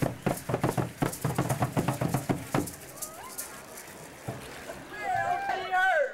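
Aztec dance drums (upright skin-headed huehuetl) beaten in a fast, steady rhythm of about five beats a second, stopping about two and a half seconds in. After that, crowd voices are faint, and a loud, wavering high voice calls out near the end.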